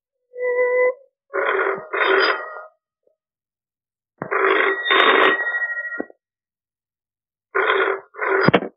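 Telephone ringing in repeated double rings, each pair about three seconds apart.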